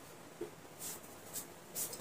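Marker pen on a whiteboard: a few short scratchy drawing strokes, starting about a second in.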